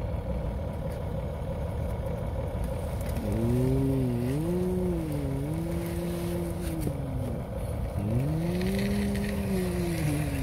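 A person imitating a truck engine with their voice: a drawn-out engine drone that starts about three seconds in and rises and falls in pitch like revving, breaks off briefly and starts again near the end, over a steady low rumble.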